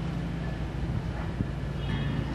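Steady low background rumble with a faint hum and no distinct events.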